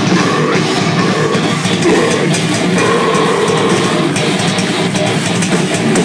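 A metalcore band playing live: electric guitars and drums, loud, dense and without a break.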